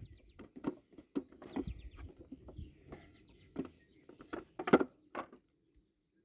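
Wooden beehive frames knocking and clicking against each other and the box as a new foundation frame is slotted into a honey super and the frames are shifted along. The clicks come irregularly, the loudest about three-quarters of the way through.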